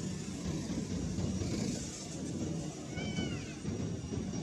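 A macaque gives one short, high call that arches and then falls in pitch about three seconds in, over a steady low rumble.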